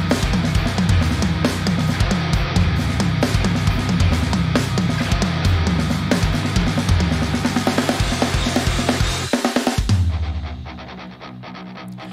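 Fast metal drumming on a large drum kit over a heavy backing track: rapid bass drum strokes under snare hits and cymbal wash. About ten seconds in, the music drops to a quieter, duller passage.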